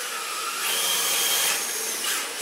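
1/10-scale electric RC drift car sliding past close by, its tyres hissing across polished concrete over the whine of its electric motor. A thin high whine holds for about a second partway in.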